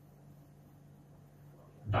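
Quiet room tone with a steady low hum; a man's voice starts right at the end.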